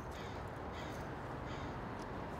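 A bird calling three times, short high calls about two-thirds of a second apart, over a steady low outdoor rumble.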